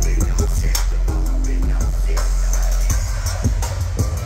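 DJ set played loud over a club sound system, with heavy bass and a steady drum beat; the deep bass thins out near the end.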